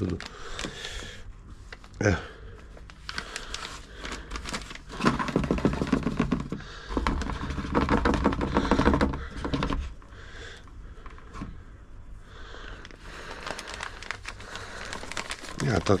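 A plastic bag of maggot fishing bait crinkling and rustling with dense, irregular crackles as the maggots are shaken out of it into small plastic tubs and handled.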